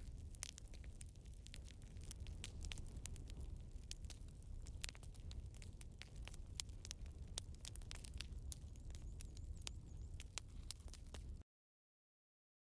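Faint, irregular crackling and popping of a Swedish fire log, an upright split log burning from its centre, over a low steady rumble. The sound cuts off suddenly shortly before the end.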